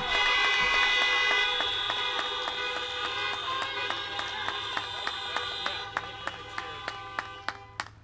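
Many car horns sounding together, several long held tones overlapping with short repeated honks about three a second, dying away toward the end.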